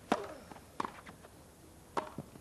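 Tennis ball struck by racket strings three times in a rally, each a sharp pop: the serve, the loudest, just after the start, the return under a second in, and a volley at the end.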